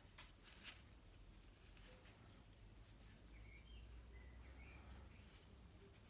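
Near silence: room tone, with two faint clicks near the start and a few faint high chirps in the middle.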